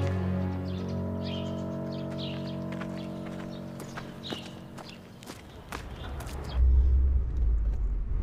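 Sustained background music chords that fade away over about five seconds, with footsteps on a road. Near the end a low, steady car-interior engine rumble comes in.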